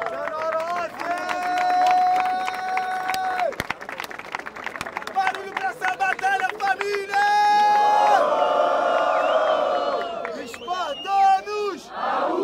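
Crowd cheering and clapping, with loud long held shouts from one or two men rising above it, several seconds at a time.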